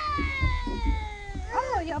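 A young child's long, high-pitched squeal, one drawn-out tone that slowly falls in pitch, with a man's voice breaking in near the end.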